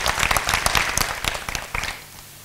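Audience applauding: many people clapping together, the applause fading away toward the end.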